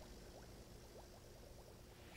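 Near silence: faint room tone with a scatter of faint, short rising blips.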